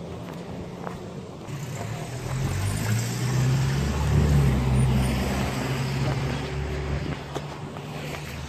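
A motor vehicle's engine passing close by: a low hum that builds over the first couple of seconds, is loudest in the middle and then fades away.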